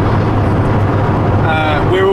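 Steady engine and road drone inside a van cabin at motorway speed.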